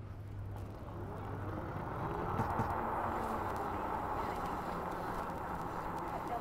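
Faint outdoor street ambience: a steady wash of background noise that grows a little louder about two seconds in.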